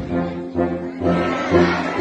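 Military band of brass and saxophones playing held chords, the chord changing about every half second.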